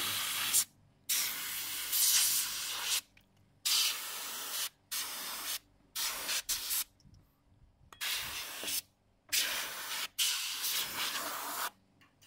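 A gravity-feed compressed-air spray gun hissing in about eight bursts of a second or so each, each cut off sharply as the trigger is pulled and let go.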